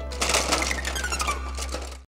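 Rapid clattering and clinking of hand tools being rummaged in a toolbox, over music with one slowly falling tone. Everything cuts off abruptly at the very end.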